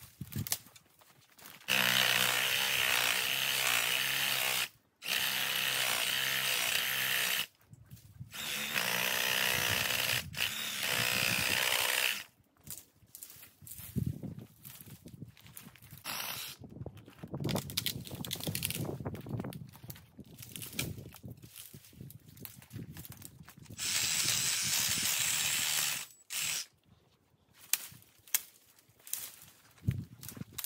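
Reciprocating saw (sawzall) cutting into a small tree in four runs of a few seconds each, the last after a long pause near the end, while hinge-cutting the trunk partway through. Irregular cracks and rustling of brush between the cuts.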